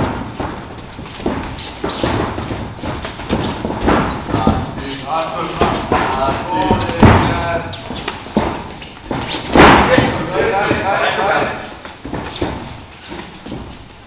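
Boxing gloves landing on gloves and guard during sparring: a run of irregular padded thuds, the heaviest a little before ten seconds in, with voices shouting now and then.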